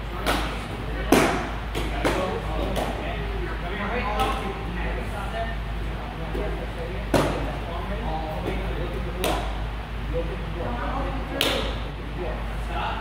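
Children's kicks and strikes smacking a hand-held martial-arts target: about eight sharp hits at uneven intervals, with children's voices in the background.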